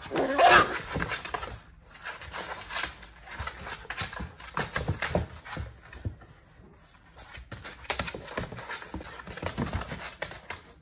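Dachshund puppy's claws scratching and scrabbling on the cardboard of a box, an irregular run of scrapes and taps. There is a brief louder pitched sound about half a second in.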